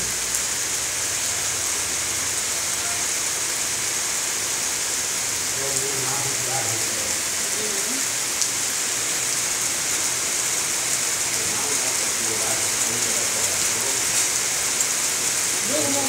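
Steady rain falling on a flooded open plot, drops hitting standing water in a continuous even hiss.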